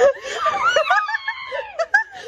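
A young girl laughing in high-pitched giggles.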